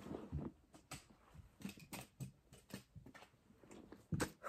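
Faint, irregular soft clicks and knocks, a few a second: handling and movement noise from a person shifting about close to the microphone.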